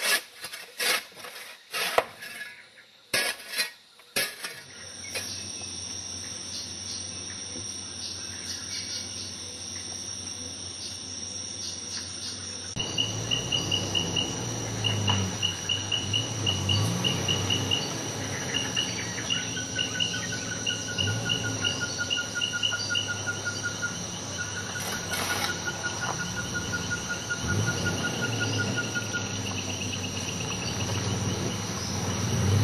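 Tropical forest insects singing: a steady high buzz, joined about a third of the way in by rapid pulsing trills at two pitches, over a low wavering rumble. A few sharp knocks sound in the first seconds.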